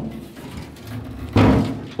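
A dropped, rusted Chevrolet El Camino steel fuel tank being tipped and shaken: a hollow sheet-metal rumble about a second and a half in. No loose rust rattles inside, so the tank's loose debris is out.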